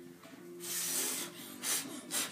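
A person blowing hard through the mouth, as if to blow out a fire: one long breathy blow about half a second in, then a shorter puff near the end.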